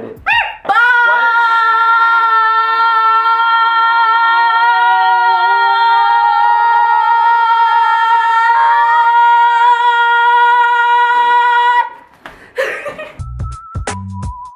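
Several voices hold one long, loud open-mouthed 'aaah' together on steady pitches for about eleven seconds, then break off. Beat-driven electronic music starts near the end.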